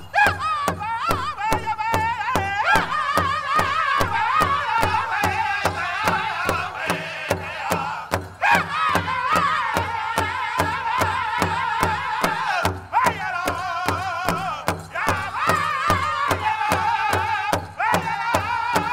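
A powwow drum group: several men singing in high, wavering voices in falling phrases over a large powwow drum beaten in a steady, even beat.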